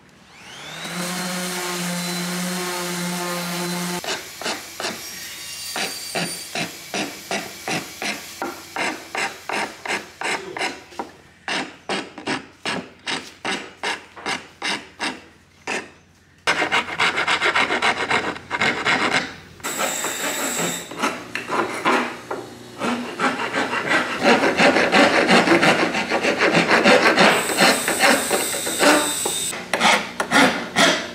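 A small electric palm sander runs steadily for about four seconds on a wooden window frame. Then a flat hand file is drawn back and forth over a small block of light wood in steady scraping strokes, about two a second at first, faster and louder in the second half.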